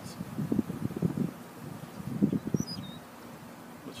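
Honey bees buzzing around an opened hive, the buzz swelling and fading in irregular bursts as bees pass close. A short high chirp a little past halfway.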